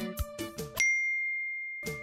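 Plucked-string background music breaks off, and a single clear, high ding rings out and fades for about a second before the music starts again.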